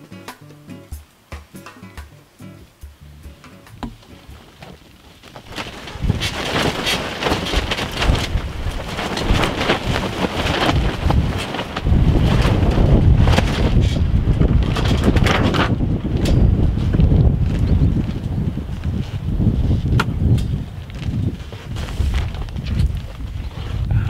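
Wind gusting against the microphone, rising about six seconds in and loudest in the middle, with faint clicks and handling sounds before it.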